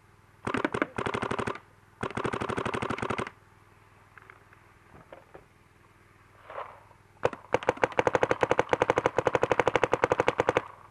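Two electronic paintball markers, a Dye M2 and a Planet Eclipse CS1, fired in turn in rapid strings of shots. First come two short bursts, then a pause, then a single shot and a longer burst of about three seconds near the end.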